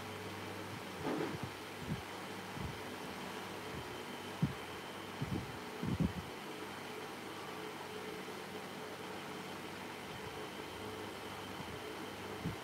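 Steady low machine hum, with a deeper hum dropping out about a second in, and a few soft low thumps, most of them between about four and six seconds in, from hands pressing and shaping soft clay on a vase.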